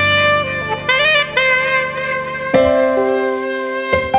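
Alto saxophone playing a slow melody with pitch bends and vibrato over live accompaniment. About two and a half seconds in, a sustained accompaniment chord comes in under the sax.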